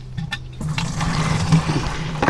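Water from a rain-barrel hose running into a plastic watering can, filling it. The rushing grows louder about half a second in.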